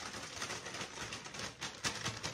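Paper bag being shaken with a cod fillet and fish breading seasoning inside: steady crinkling and rustling of the paper, broken by quick knocks, with a sharper one near the end.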